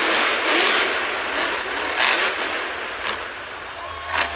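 Monster truck engine noise in an arena, a dense roar that is loudest at the start and fades gradually.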